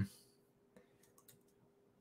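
A few faint, scattered clicks of computer keyboard keys, light keystrokes made while editing code.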